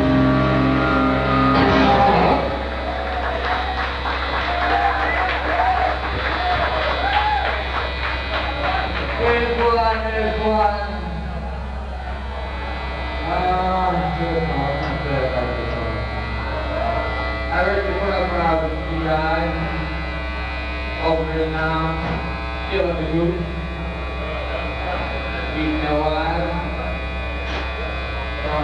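A rock band's full chord ends about two seconds in. An electric guitar then plays slow, wavering bent notes over a steady mains hum from the stage amplification.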